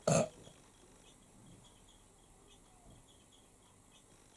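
A woman's short vocal "uh" grunt, then near silence with a few faint light ticks as a makeup pencil works at the inner corner of the eye.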